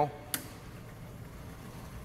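A single sharp click about a third of a second in: the alarm circuit breaker in a grinder-pump control panel being switched on, then quiet room tone.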